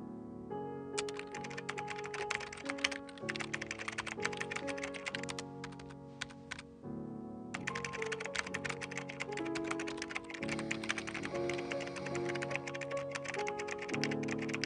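Rapid computer keyboard typing, a fast run of key clicks that breaks off briefly about seven seconds in and then resumes, over music with sustained chords.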